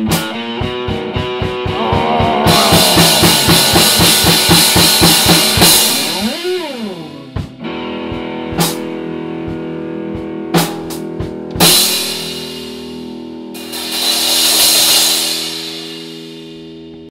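Ending of an amateur rock song on guitar and drums: a fast run of even drum hits under a cymbal wash, then a pitch slide up and back down about six seconds in. A few separate hits follow over a ringing chord, and a last cymbal wash fades out near the end.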